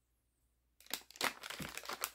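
Plastic packaging of a Cirkul flavor cartridge crinkling as it is handled, starting just under a second in as a run of short crackles.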